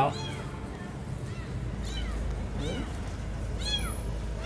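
A newborn kitten crying: a string of short, high-pitched mews, about one a second.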